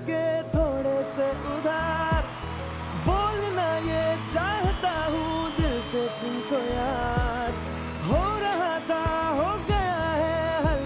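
Male vocalist singing a Bollywood song live, with gliding, ornamented phrases over acoustic guitar accompaniment.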